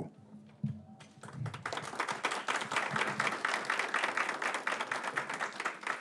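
Audience applauding, starting about a second in after a near-silent moment and continuing as a steady patter of many hands.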